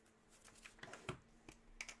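Faint scattered clicks and light taps of small objects handled on a desk: a trading card in a hard plastic holder set down and a marker picked up.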